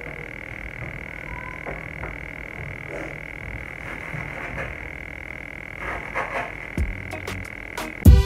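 Kitchen knife cutting green stalks on a wooden cutting board: sparse, irregular taps of the blade on the board, a few more of them near the end, over a steady high-pitched tone in the background.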